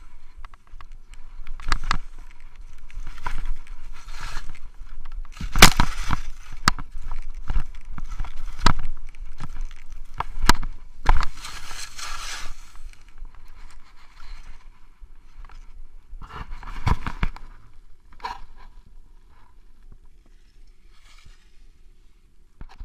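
Skis swishing and scraping over snow, with frequent sharp knocks and clatter as they hit bumps on a forest trail. The sound is loudest through the first half, then quieter and smoother from about 18 seconds in.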